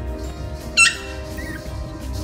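Background music with a steady beat, and about a second in a single short, loud, high-pitched yip from a Pomeranian puppy.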